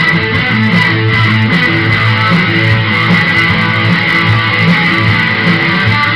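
Instrumental break in a rock song with no singing: guitar playing over changing low bass notes, with a steady high tone running underneath.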